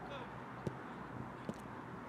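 Two sharp thuds of a football being kicked, just under a second apart, over a steady open-air background with faint shouts from players.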